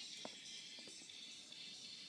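A song playing faintly from a Sony Xperia Z's speaker while the phone lies submerged in water.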